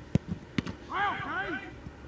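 Sharp thuds of a soccer ball being struck, the loudest just after the start and another about half a second in, then a short two-part shout whose pitch rises and falls.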